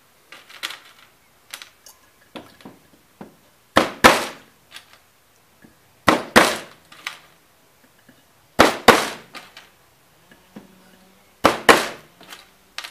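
Claw hammer driving nails into a wooden block: pairs of hard blows about every two and a half seconds, with lighter taps in between.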